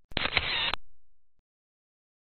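Photo booth's camera-shutter sound taking a picture: a click, a short hiss of about half a second and a closing click, then a brief fade.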